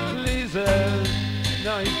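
Rock band instruments playing loosely: held bass notes under bending, sliding guitar notes, with a few drum hits.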